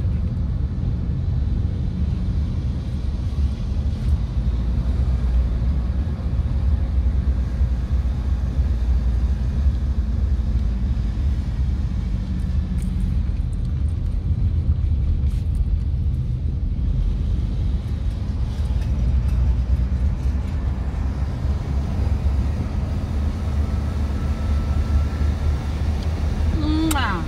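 Steady low rumble of engine and road noise inside the cabin of a moving car.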